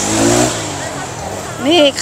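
A motor vehicle engine running close by, fading out about half a second in, over market street noise.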